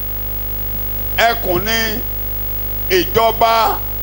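Steady electrical mains hum running under the recording, with a voice speaking two short phrases, the first about a second in and the second about three seconds in, louder than the hum.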